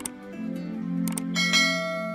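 Subscribe-button sound effect over intro music: a mouse click at the start, two more quick clicks about a second in, then a bell chime that rings on.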